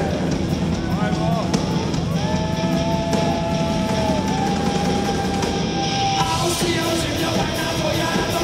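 Live rock band playing, with a singer's voice over electric guitars and drums. One long held note runs from about two seconds in.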